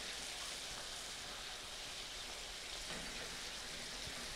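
Saltimbocca simmering in butter and white wine in a nonstick frying pan, a soft, steady sizzle as the wine cooks off.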